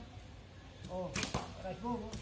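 An arrow shot from a child's recurve bow: one short, sharp snap of the released string and arrow about a second in, among brief voices.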